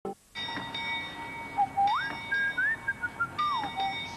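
A whistled melody, one clear tone sliding up and down, over steady held backing tones as an advertising jingle begins.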